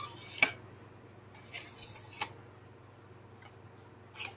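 Telescopic handles of a garden lopper being slid out and locked: a sharp click about half a second in, then a short sliding rub ending in a second click a little past two seconds.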